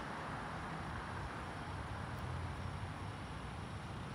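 Steady outdoor background noise: a low rumble under a faint even hiss, with no distinct events.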